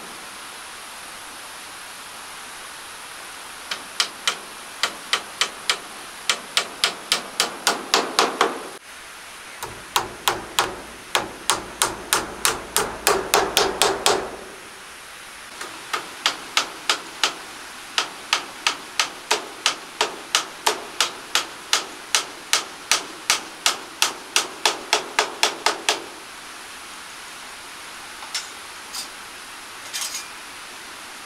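Hammer driving nails into a timber wall frame: three long runs of steady blows, each run quickening towards its end as the nail goes home.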